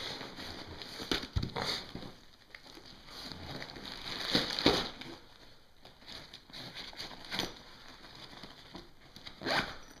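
Faint handling noise from a nylon backpack and its contents: scattered rustles and a few light knocks as items are moved in and out of a pouch.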